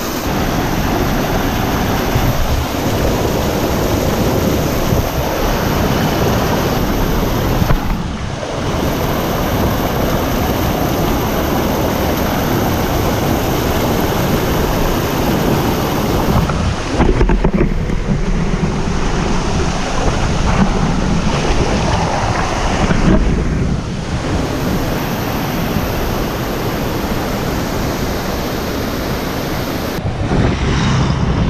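Whitewater rushing and splashing over boulders below a waterfall, loud and close to the microphone. The level dips briefly three times.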